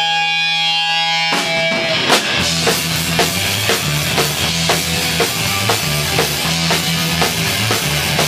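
Hardcore punk band playing live: a held, ringing electric guitar chord, then drums, bass and guitar come in together about a second and a half in, with a steady beat of about two hits a second.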